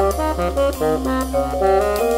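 Small jazz group of bassoon, vibraphone/marimba, guitar and percussion playing. It moves through a quick run of short notes, about five a second, over a held low note.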